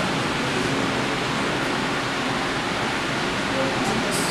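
A steady, even rushing noise that spreads from low to very high pitch, with no words and no distinct strokes.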